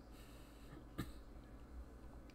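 Quiet room tone with one short, sharp click about a second in.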